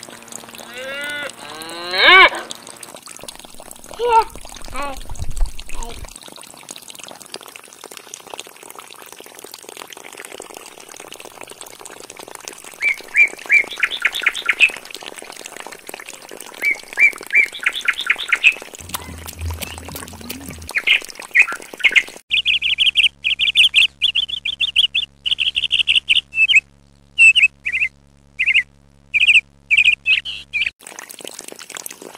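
Birds chirping in repeated short high calls through the second half, with a cow mooing once about two seconds in. Water from a small pump pipe trickles and pours underneath until the background cuts out near the end.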